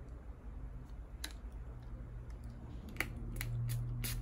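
Pump-mist setting spray bottle being spritzed onto a makeup sponge: one short spritz about a second in, then three quick ones near the end.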